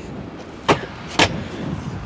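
Two sharp knocks about half a second apart from the hard plastic cargo floor of a Honda Passport SUV, as the floor panel over the spare-tire well is set back down.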